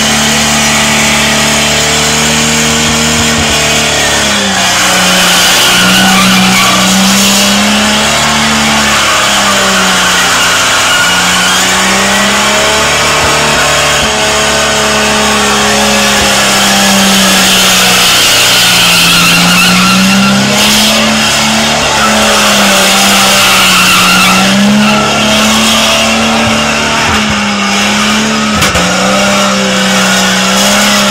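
A car doing burnouts on a dirt speedway track. The engine is held at high revs, dipping and climbing again every few seconds, over the hiss and squeal of spinning tyres.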